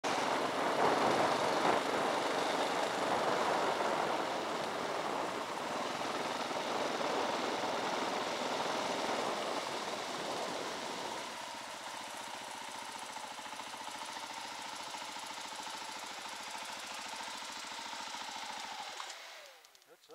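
Dirt bike engine running under way, heard with wind rush on a helmet-mounted camera: loudest for the first ten seconds or so, then settling to a steadier, quieter run. The sound falls away abruptly about a second before the end as the bike stops.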